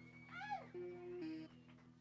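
Electric guitar played through effects: a quick swoop up and down in pitch, then two short held notes, over a steady amplifier drone.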